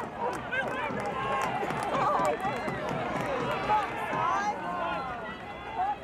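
Several men shouting and calling over one another during field hockey play, with occasional sharp clicks.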